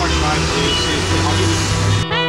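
Indistinct voices over the low drone of a passing motor vehicle, which grows louder and then cuts off abruptly at the end.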